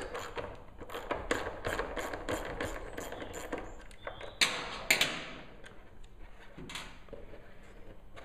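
Screwdriver backing self-tapping screws out of a plastic fuel tank to free the fuel tap: a run of quick light clicks, two sharper clicks about four and a half seconds in, then a few scattered faint clicks.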